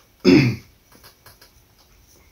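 A man clears his throat once, a short harsh burst about a quarter second in, as the ghost pepper sauce he has just tasted takes hold; a few faint clicks follow.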